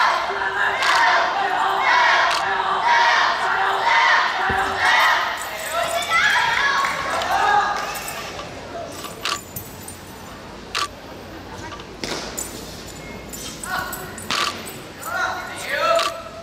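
Spectators chattering in a large, echoing sports hall, loudest in the first half. In the quieter second half come about half a dozen sharp thuds, a second or more apart, from the wushu performer's routine on the competition carpet.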